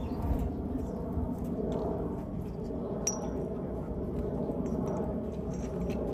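Open-air ambience: a steady low rumble with a short, high chirp about three seconds in.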